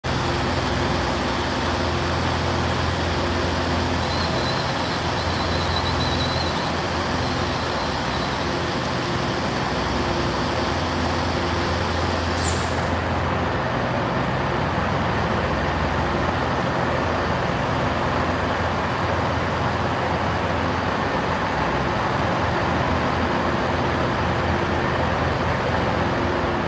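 Diesel engines of a Northern Class 150 multiple unit running steadily at the platform, a low drone with a brief high squeal about halfway through. The lowest hum drops away about three quarters of the way in.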